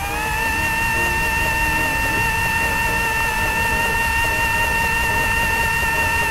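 Microwave oven running sound effect: a steady electric hum over a whirring noise, its pitch rising briefly as it starts.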